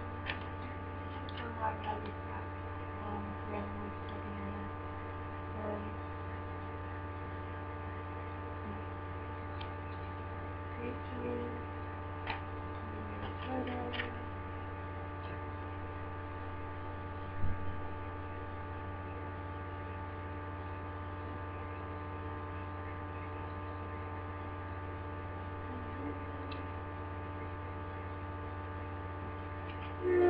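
Steady electrical hum with several steady tones layered over it, with a few faint clicks and one louder knock about 17 seconds in.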